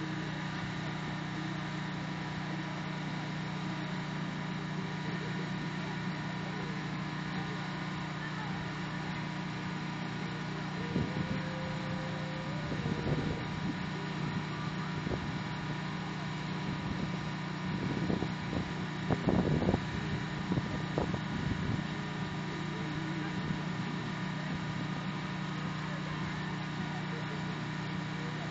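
Portable generator's engine running at a steady hum throughout. A few voices rise over it a little before the middle and again past the middle.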